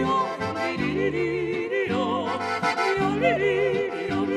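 A Slovenian folk band playing live: a man and a woman singing in duet with vibrato over accordion and double bass, with the bass notes repeating steadily underneath.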